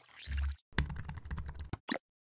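Computer-keyboard typing sound effect: a quick run of keystrokes lasting about a second, after a short swish with a low thud, and ending with a single click.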